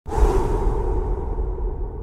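Whoosh sound effect in an animated intro: it starts abruptly, its hiss fading over about a second, over a steady low rumble.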